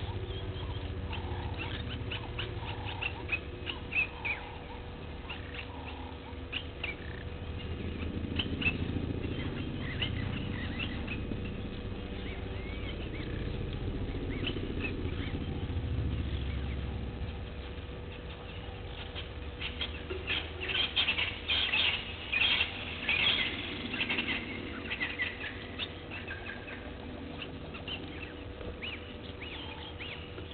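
Outdoor bush ambience: short high chirps and clicks that are busiest about two-thirds of the way through, over a low rumble and a faint steady hum.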